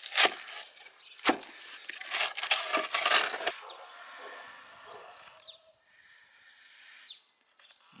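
Wooden board being worked loose and pulled out of its groove in set polystyrene concrete: wood scraping on the gritty concrete with sharp knocks and cracks for the first three seconds or so. After that only a faint hiss with a few short high chirps.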